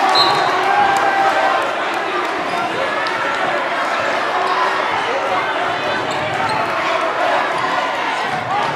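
Gymnasium sound during basketball play: a ball bouncing on the court and the voices of a crowd echoing in the hall, with short sharp impacts and a few brief high squeaks scattered through it.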